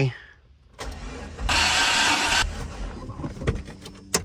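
Dodge Neon SRT-4's turbocharged 2.4-litre four-cylinder being cranked over by the starter with no spark or fuel, spark plugs removed, to build pressure in a compression gauge on cylinder three. The cranking begins about a second in, with a loud hiss lasting about a second partway through.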